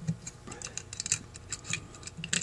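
Small, irregular metal clicks and light scraping as the float hinge pin and baffle of a Holley 2280 carburetor are pushed down into their slots in the float bowl, the baffle a tight fit.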